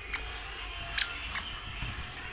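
An inflated rubber balloon handled by small hands: three short sharp taps, the loudest about a second in.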